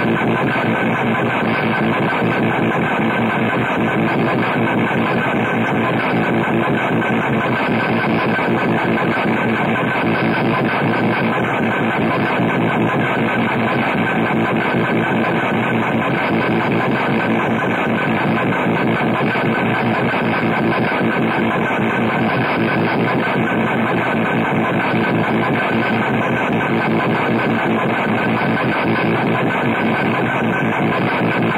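Live harsh noise music taken straight off the mixing desk: a dense, unbroken wall of noise, steady in level throughout, with a few droning tones held inside it.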